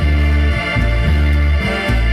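A school brass and wind band playing live, with sousaphones, trombones and saxophones. Strong bass notes change about every half second under held chords.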